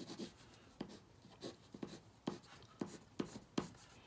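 Faint graphite pencil scratching on paper in short, quick, irregular strokes as straight lines are drawn.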